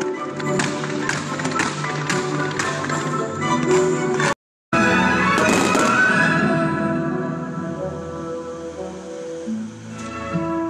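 Music with long held notes playing over a fireworks display: a run of sharp cracks and pops in the first few seconds, a brief break, then a loud crackling burst that fades away.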